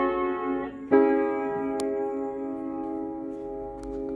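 Story & Clark upright piano: a chord fading at the start, then a second chord struck about a second in and left to ring, slowly dying away until it cuts off at the very end.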